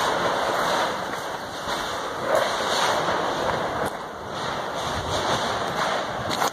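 Volcanic steam venting from cracks in the ground: a steady rushing hiss that swells and eases.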